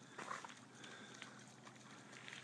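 Near silence: faint outdoor room tone with a few small, brief sounds near the start and a faint click about a second in.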